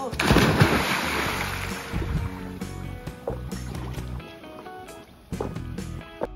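A person jumping feet-first into a swimming pool: one big splash just after the start, its wash fading over about two seconds. Background music plays throughout.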